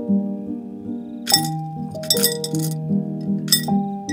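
Coins dropping into a glass mason jar, clinking a few times, over background music with held, changing notes.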